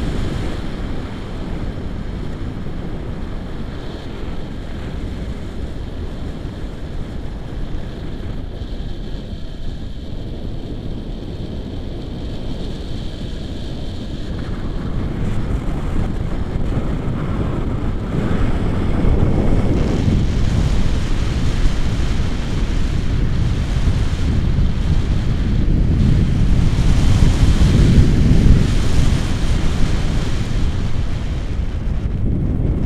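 Wind buffeting the camera microphone in flight on a paraglider, a steady rush that grows louder about halfway through, with stronger gusts near the end.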